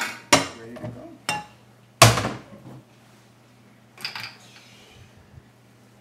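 Kitchen dishes and a wooden cabinet being handled: a few clattering knocks in the first two seconds, the loudest about two seconds in, and a softer one about four seconds in.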